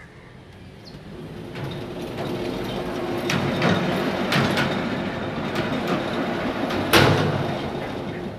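Small single-cylinder engine driving a construction hoist winch. It runs and grows louder over the first few seconds, with a series of sharp metal clanks, the loudest about a second before the end.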